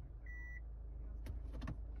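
A single short electronic beep from the car's head unit about a quarter second in, then a quick cluster of clicks near the end, over a low steady hum.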